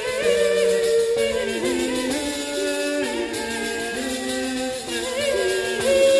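A woman and a man singing early Italian polyphony, their held notes with vibrato moving step by step against each other in separate parts.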